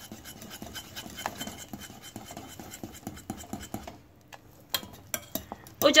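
A utensil quickly stirring thick vermicelli-and-milk pudding in a pot, with a run of scrapes and clicks against the pot. There is a brief lull about four seconds in, then a few sharp clicks.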